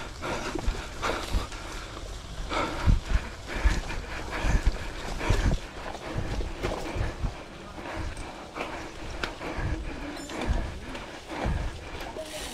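Factor gravel bike riding over rough dirt singletrack, with irregular thumps and rattles as the tyres hit bumps and roots, over a steady rushing noise of tyres and wind on the microphone.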